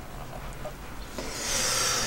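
Low steady hum of a quiet workshop, then from about a second in a growing hiss of rubbing handling noise as the handheld camera is moved around.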